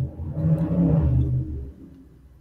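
Motorcycle engines on the street outside, a loud low rumble that swells and then fades away over about a second and a half.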